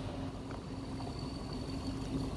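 Distant diesel locomotive engine running with a steady low hum.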